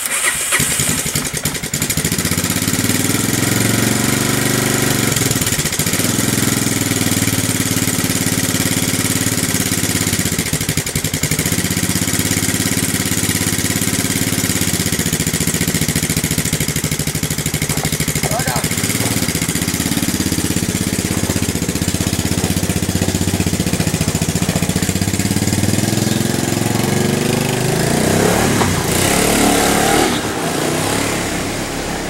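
Four-wheeler ATV engine running, its speed rising and falling unevenly. Near the end it revs up in rising pulls, as if the rider is pulling away.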